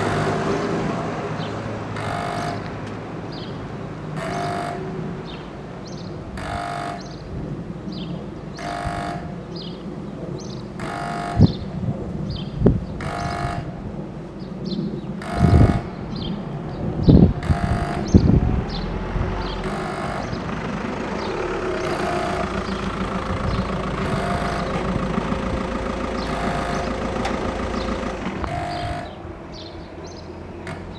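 Soviet-type level crossing warning horn honking, one short blast about every two seconds, as the crossing warns of an approaching train. In the second half a steady hum runs under the honks while the barriers come down, and a few sharp knocks sound around the middle.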